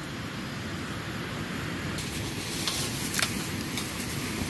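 Steady low background rumble of outdoor ambience, with a few faint clicks in the second half.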